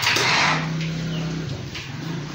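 A stainless-steel knapsack sprayer's wand hissing as it sprays, loudest in the first half-second and then in weaker surges. A low steady tone runs underneath.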